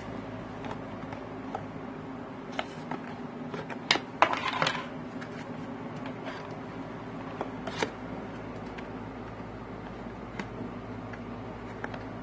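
Light clicks and taps of a plastic toy glasses frame and a cardstock pirate hat being handled on a tabletop, a few seconds apart, with the busiest cluster about four seconds in, over a steady low hum.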